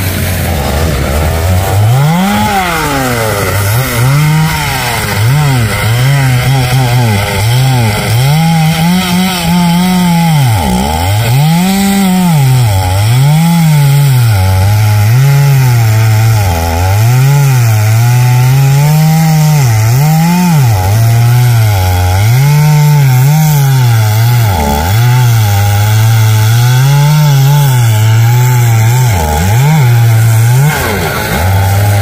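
Husqvarna 365 two-stroke chainsaw cutting into the trunk of a large rain tree. Its engine pitch rises and drops over and over as the chain loads up in the wood and frees again.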